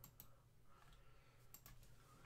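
A few faint computer mouse clicks, one near the start and a quick cluster about a second and a half in, over a low steady room hum.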